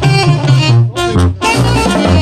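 Tamborazo band playing live: saxophones and trumpets carry the melody over the thump of the tambora bass drum and the snare drums. The band breaks off briefly twice around the middle.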